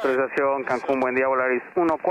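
Air traffic control radio transmission heard over the cockpit radio: a voice talking steadily through a narrow, tinny radio channel, with a few faint clicks.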